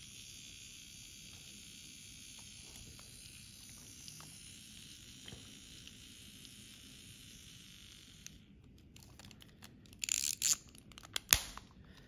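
Faint steady hiss, then near the end a brief plastic rustle and one sharp click as the yellow plastic capsule of a Pocket Critters keychain is handled and snapped shut.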